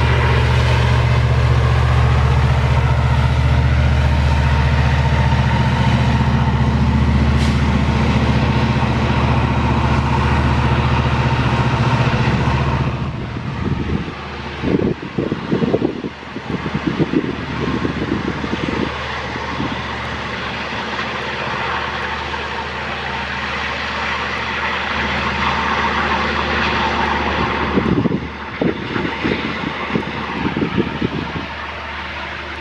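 EMD SD80ACe diesel-electric locomotive working under load on a steep grade as it pushes a loaded iron-ore train, its diesel engine giving a steady deep drone. About 13 seconds in the sound changes abruptly to a more distant train rumble, broken by irregular low buffeting thuds typical of wind on the microphone.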